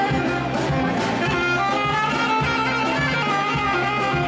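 Live Greek traditional dance music with a saxophone playing a sustained, ornamented melody over a steady beat.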